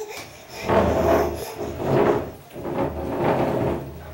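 Legs of a small IKEA side table scraping across a hardwood floor as it is shoved along in three pushes, each about a second apart.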